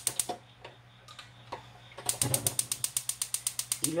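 Gas stove burner igniter clicking in rapid, even ticks, about nine a second, as the burner under the wok is being lit. A short burst of clicks comes right at the start, then after a pause a longer run from about halfway in.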